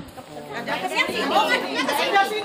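Chatter of a group of women, several voices talking over one another.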